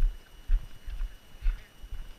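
A hiker's footsteps on a dirt and gravel trail at a brisk walk, about two steps a second, each heard as a low thump.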